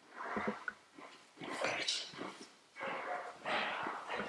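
Several short, breathy exhalations and the rustle of bodies shifting on a training mat as two grapplers reset their position.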